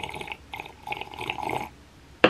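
A person gargling a mouthful of drink in the throat: a few rough, bubbling spurts that stop shortly before the end.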